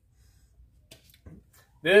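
Near quiet with two faint clicks about a second in, light handling noise from the double-barrel shotgun being moved in the hands; a man's voice starts near the end.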